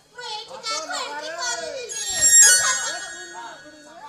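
A stage actor's voice speaking in an exaggerated, sing-song way, its pitch swooping up and down. A steady high tone joins in about halfway through.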